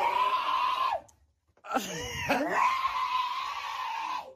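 Two long, high-pitched cries: the first lasts about a second, then after a short silence a second, wavering one is held for over two seconds.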